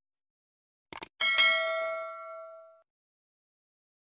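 Subscribe-button animation sound effects: a quick double mouse click about a second in, then a notification bell ding that rings on and fades away over about a second and a half.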